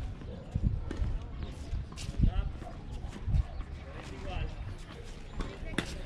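Voices talking, not close to the microphone, over a steady low rumble, with a couple of sharp knocks, about two seconds in and near the end.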